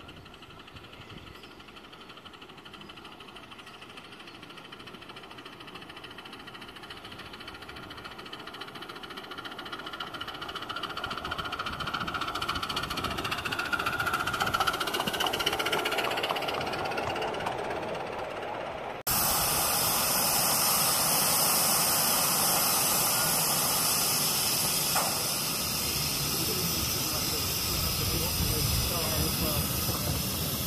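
A 7¼-inch gauge live steam Southampton Docks tank locomotive running with its train of wagons, growing louder as it nears and passes. Partway through the sound cuts to the engine close up, with a loud, steady hiss of escaping steam.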